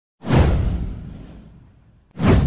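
Cinematic whoosh sound effect of an intro animation: one sudden deep swoosh about a fifth of a second in, fading away over about a second and a half.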